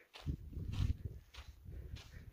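Footsteps on a dry dirt path at a walking pace, about two steps a second, with a low rumble under them.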